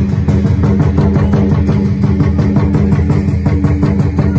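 Dragon-dance accompaniment of drums and cymbals playing a fast, steady, driving beat.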